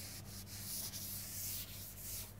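A board duster rubbed back and forth across a chalkboard, wiping off chalk writing in a run of strokes with brief breaks between them. It is a continuous scratchy hiss.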